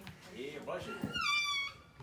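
Faint low voices, then a brief high-pitched cry a little over a second in that holds for about half a second.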